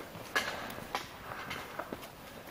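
Hikers' footsteps on a sandy, gritty canyon floor, three steps crunching over a faint background hiss.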